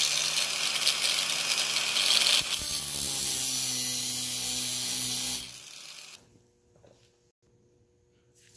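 Angle grinder with a thin cutoff disc cutting a slot across the head of a rusted, stripped eight-point trailer-panel screw, so that it can be turned out with a flat-blade screwdriver. The grinder runs steadily under load, then stops about five and a half seconds in and winds down briefly.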